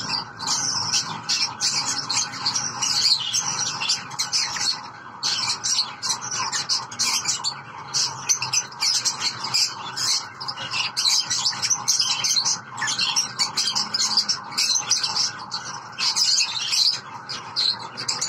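Masked lovebirds chirping continuously: many short, high chirps in quick succession.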